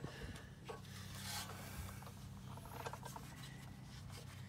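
Faint scraping and rubbing of a long steel bolt being pushed through the brace and frame holes, with small clicks, over a low steady hum.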